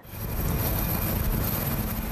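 Marine One, a Sikorsky VH-3D Sea King helicopter, landing: a steady rush of rotor and turbine noise with a heavy low rumble.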